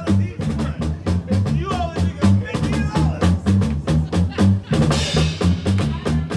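Live drum kit playing over a repeating electric bass line, with regular kick and snare hits and a cymbal wash near the end as the new drummer starts his approach.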